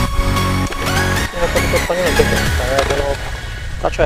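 Electronic dance music with a steady low beat and a wavering, voice-like melodic line in the middle, fading toward the end.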